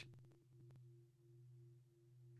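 Near silence, with only a faint, steady low tone: the fading ring of a meditation gong.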